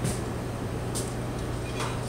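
Steady low room hum during a pause in speech, with a couple of faint short ticks.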